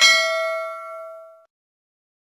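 A single bright bell ding, several ringing tones fading away and gone about a second and a half in: the notification-bell sound effect of a subscribe-button animation, played as the bell icon is clicked.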